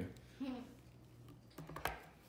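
A brief murmured "hmm", then a few light clicks close together near the end.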